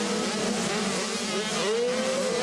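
Several 85cc two-stroke motocross bikes racing on track, their engines buzzing and revving together, with one rising in pitch near the end.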